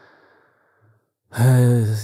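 A man's quiet sigh, a breathy exhale lasting about half a second at the start, before he starts talking.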